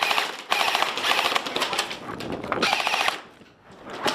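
Airsoft electric guns firing rapid full-auto bursts: a brief one at the start, a long burst lasting over a second and a half, and a shorter one near three seconds in. The firing then stops.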